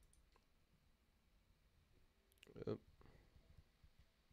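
Near silence with a few faint, short clicks at a computer desk, then a single spoken word near the end.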